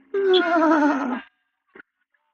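A man's voice singing one falling note of about a second, with a heavy wavering vibrato that sounds almost like a whinny.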